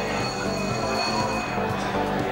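Greyhound track bell ringing steadily, a few high piercing tones held without a break and fading near the end.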